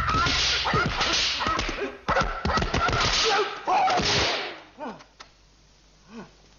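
Martial-arts film fight sound effects: quick whooshing swishes and sharp smacks of blows in rapid succession, over a high wavering cry. It dies away about four and a half seconds in, leaving only a couple of faint knocks.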